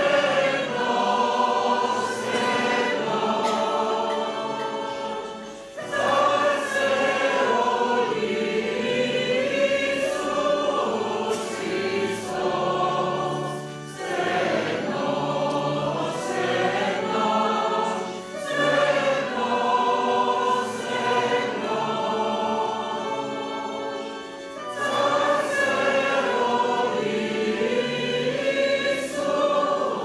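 Church choir singing a hymn in long phrases, with brief breaks between phrases about every eight to ten seconds.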